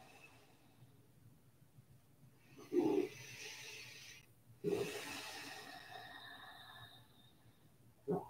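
A person breathing slowly and audibly while holding a seated yoga twist: one breath about three seconds in, then a longer one about five seconds in that trails off.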